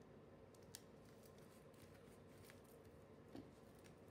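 Near silence with a few faint, short ticks and taps: a paper sticker being placed and pressed down onto a planner page by hand.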